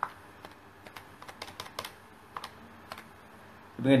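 A series of light, irregular clicks as numbers are keyed into a mobile phone, about a dozen taps, bunched around the middle. A man's voice starts just before the end.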